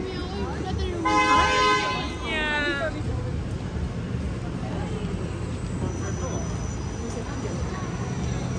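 A vehicle horn sounds about a second in, one steady note lasting about a second, then a shorter note that falls in pitch, over steady street noise.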